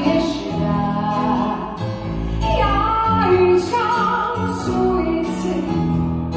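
A woman singing live into a microphone, holding long, wavering notes over keyboard accompaniment, heard through the hall's loudspeakers.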